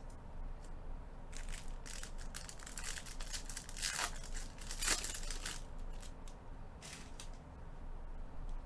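Foil trading-card pack wrappers crinkling and tearing as they are handled and opened, in irregular crackling bursts that are densest and loudest through the middle.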